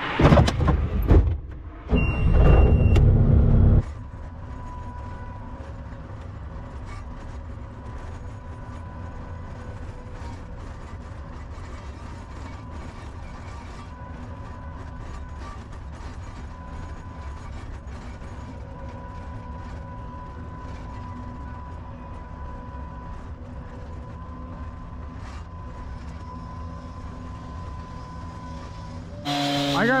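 Skid steer loader engine running steadily. Two louder, noisier bursts come in the first four seconds, then an even, unchanging hum.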